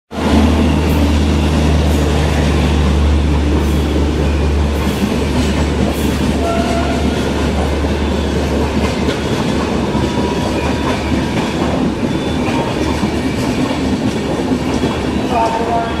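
A WAP-5 electric locomotive and its rake of double-decker passenger coaches passing through a station at speed: a loud, steady rumble of wheels on the rails. A deep hum from the locomotive is strongest for the first five seconds or so, then fades as the coaches roll past.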